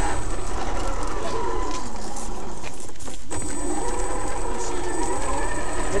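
Traxxas X-Maxx electric RC monster truck driving, its brushless motor whining over the rumble of its tyres rolling along wooden boardwalk and then a forest path. The whine cuts out for a moment about three seconds in as the throttle is eased, then picks up again.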